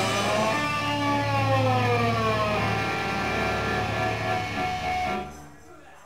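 Live hard rock band holding out the closing chord: sustained electric guitar notes bending down in pitch over a steady low bass note, ending about five seconds in.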